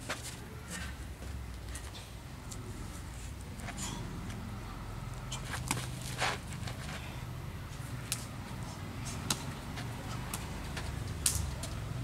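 Scattered short slaps and knocks, about ten at irregular intervals, from two fighters sparring barehanded on bare dirt, over a steady low rumble.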